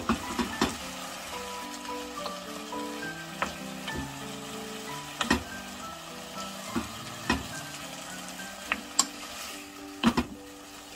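Squid, meat and onions sizzling in a frying pan as they are stir-fried with a spatula, with a few sharp knocks of the spatula against the pan. Soft background music with a gentle melody plays along.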